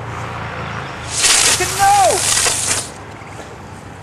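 A small ground firework going off with a loud spraying hiss for about two seconds, starting about a second in, and a person's exclamation over it.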